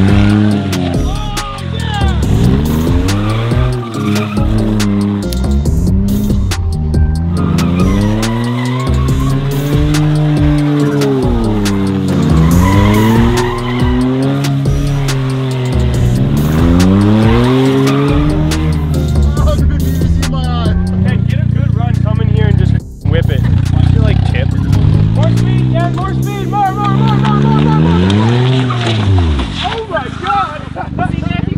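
Smart Fortwo's small three-cylinder engine revving up and down again and again as the car drifts in circles. Its rear wheels are sleeved in hard PVC pipe, and the plastic sleeves slide and scrub on the concrete.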